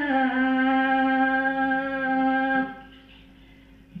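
A woman singing a hawfi, the Algerian women's sung poetry. She holds one long steady note for about two and a half seconds, then breaks off into a brief pause. The next phrase begins right at the end.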